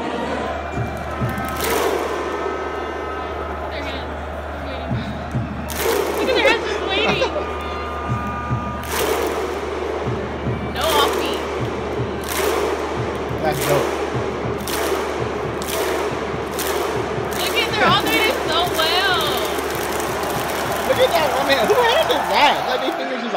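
Stadium football crowd clapping in unison over a mass of crowd voices, the claps spaced widely at first and coming faster and faster.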